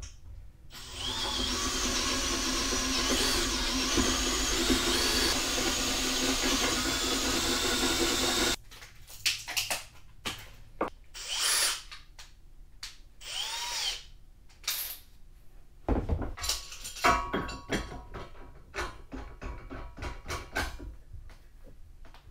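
Makita 18V cordless drill boring through the steel winch mounting plate, enlarging its holes to take 3/8-inch concrete bolts: one long run of about eight seconds with a wavering squeal from the bit in the metal. Then the drill is run in short spurts, followed by clicks and knocks of tools and metal being handled.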